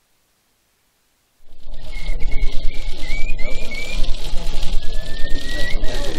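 After about a second and a half of silence, outdoor wind starts buffeting the microphone with a heavy low rumble and a rapid crackle of clicks. Over it a thin high whistle sounds in short wavering notes, then gives one slow rising whistle near the end.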